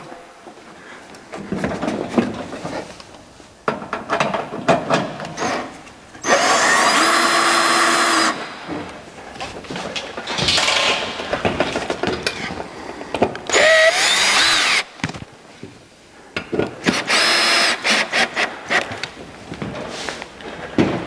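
Battery-operated drill with a hex driver bit running in short bursts, about four runs with the longest lasting about two seconds, as it pulls in the fasteners that tension a flexible banner in its frame. Quieter clicks and knocks come between the runs.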